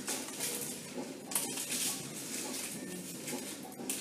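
Scissors cutting through greaseproof paper, the paper rustling as it is handled.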